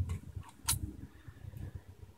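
Faint handling and scraping as a protective cover is pulled off a 2.5-inch laptop hard drive, with one sharp click just under a second in.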